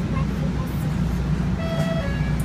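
Steady low rumble inside a DART light-rail passenger car. Near the end a short, steady, pitched tone sounds for under half a second.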